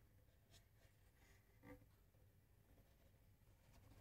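Near silence: room tone with a low hum and a couple of faint ticks from a soprano ukulele being handled and turned in the hands.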